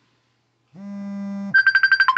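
Mobile phone ringtone. About three quarters of a second in, a low steady tone sounds for under a second. It gives way to a fast run of short high beeps, more than ten a second.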